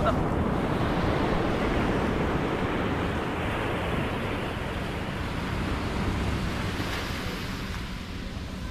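Steady rushing noise of surf and wind on the shore, easing off slightly toward the end.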